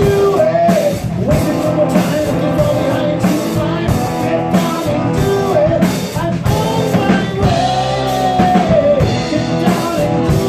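Live rock band playing: a man singing lead over strummed acoustic guitar, electric guitar, bass and a drum kit keeping a steady beat.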